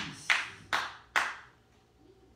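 Four sharp hand claps in an even rhythm, a little over two a second, ending about a second and a half in.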